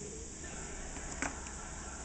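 Quiet kitchen room tone, a steady low hiss, with one faint tap about a second in.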